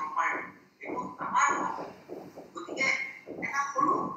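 A person speaking over a video-call connection, with rapid breaks and changes of pitch.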